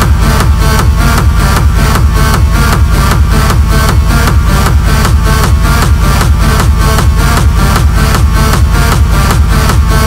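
Techno from a DJ mix: a steady, evenly pulsing dance beat over a heavy bass, with a repeating synth figure on top.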